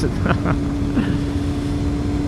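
Yamaha FZR600R's inline-four engine holding one steady note at an even cruising speed, with wind and road rumble on the microphone underneath.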